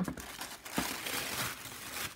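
Tissue paper crinkling as it is unfolded and pulled back by hand, with a sharper crackle a little under a second in.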